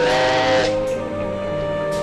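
Steam locomotive whistle with a burst of steam hiss in the first half-second or so, over sustained background music.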